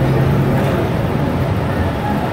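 Gillig BRT clean diesel bus heard from inside the cabin while under way: a steady low engine drone and road rumble. A low engine tone fades out under a second in, leaving the road and cabin rumble.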